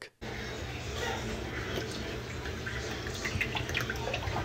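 Cooking oil being poured from a large plastic bottle into a metal pot, a steady liquid pour.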